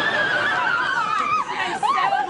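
A long, high-pitched squeal from a female voice, held for a couple of seconds and sliding slowly down in pitch, then breaking into excited voice sounds near the end.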